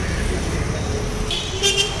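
Steady street-traffic rumble, with a vehicle horn sounding briefly near the end.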